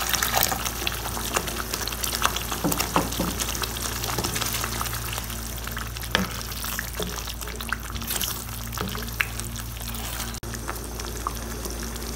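Water poured into a pan of hot curry masala, sizzling and bubbling with many small crackles, then a spatula stirring the thinned sauce around the pan.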